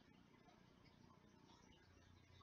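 Near silence: faint room tone in a pause between sentences of speech.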